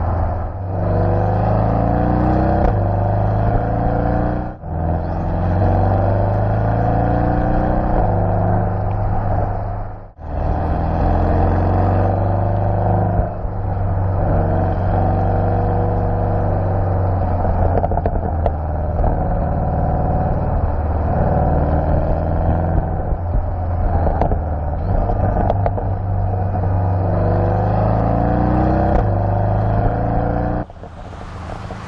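The 2018 Porsche 718 Boxster GTS's turbocharged 2.5-litre flat-four engine pulling hard and revving, its pitch climbing and falling again and again through the gears. The sound breaks off briefly twice, about four and ten seconds in.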